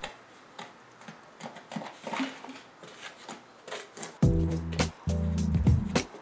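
Faint scraping and knocking of a wooden stick stirring Satanite refractory mortar mixed with water in a plastic bucket. About four seconds in, louder background music with a steady beat comes in over it.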